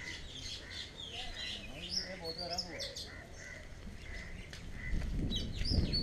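Several small birds chirping and calling, one of them repeating a short call about twice a second. A low rumble comes in about five seconds in.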